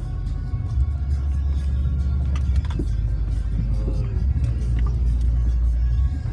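Low, steady drone of a Ford F-150 pickup heard from inside the cab as it drives slowly over a muddy, rutted dirt road, with a few knocks about halfway through. Music plays alongside.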